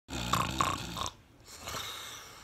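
A person snoring: one rattling snore lasting about a second, followed by a faint breath out.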